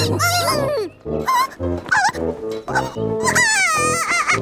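High, squeaky, wordless cartoon-creature vocalizations over background music. Near the end there is a high, wavering, falling wail of a small cartoon bunny crying.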